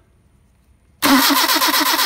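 Mercedes-Benz 190SL four-cylinder engine on twin Solex carburetors, started from cold on the choke: it comes in suddenly about a second in and runs on with a steady, rapid pulsing beat. It is a good cold start for the freshly fitted carburetors.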